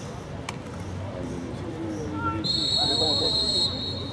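A referee's whistle blows one steady, high-pitched blast of just over a second, starting about two and a half seconds in, blowing the play dead. Voices from the sideline and spectators run underneath.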